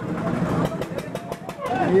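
Fairground background din with indistinct voices and a rushing noise, heard from high on a Ferris wheel, with a run of fast faint ticks partway through. A voice starts right at the end.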